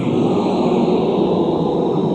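Many voices reciting together in unison, blurring into a dense chorus with no single voice standing out.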